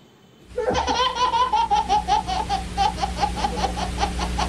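A baby laughing hard: a fast, steady string of high-pitched belly laughs that starts about half a second in, after a brief silence.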